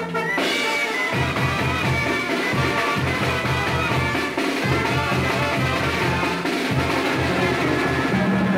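Mexican banda brass band playing an instrumental break between sung verses: trumpets and trombones carry the melody over a pulsing tuba bass line and drums. The bass line comes in about a second in.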